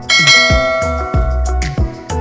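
A bell chime sound effect rings out just after the start and fades within about a second, over background music with a steady beat.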